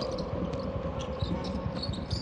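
Basketball being dribbled on a hardwood court: irregular low bounces over a steady arena background hum.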